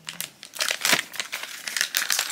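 A plastic blind-bag packet being torn open and crinkled by hand, an irregular run of crackles and rustles.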